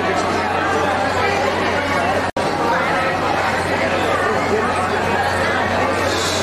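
Chatter of a crowd in a large hall, many voices overlapping over a steady low hum. The sound drops out for an instant a little past two seconds in.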